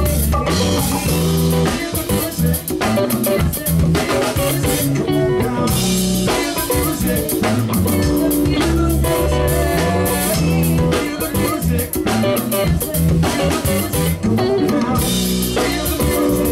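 A live band playing with electric guitar and drum kit, loud and steady throughout.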